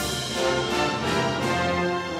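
Orchestral music with brass, playing steadily.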